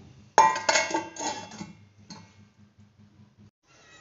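A steel plate set over a clay cooking pot as a lid, landing with a sharp clank that rings and fades over about a second, followed by a faint click.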